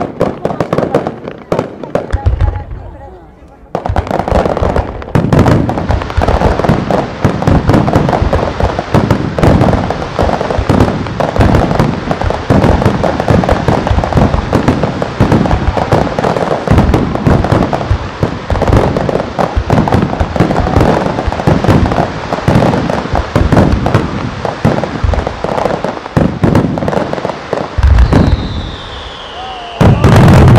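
Fireworks display: a dense, near-continuous barrage of aerial shell bursts and crackling, many reports a second, after a brief lull a few seconds in. Near the end the barrage thins and a falling whistle is heard.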